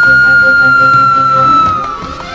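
Korg electronic keyboard playing a long held lead note in a flute-like voice, sliding slightly down near the end, over a steady low accompaniment.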